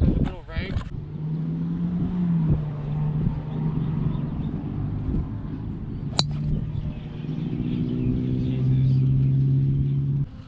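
A golf driver striking a ball off the tee: one sharp crack about six seconds in. Under it a steady low hum runs throughout.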